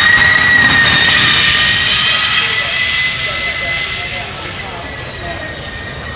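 Audi S1 Hoonitron's electric drivetrain giving a high whine under acceleration, its pitch having just risen and now holding nearly steady, fading as the car pulls away.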